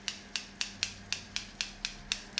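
Hairdressing scissors snipping the split ends off a twisted strand of long hair, in quick regular snips about four a second.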